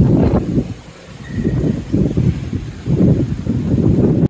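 Wind buffeting the microphone: a low, gusty rumble that swells and dips several times.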